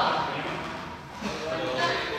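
Indistinct voices chattering in a large, echoing sports hall, with no clear words.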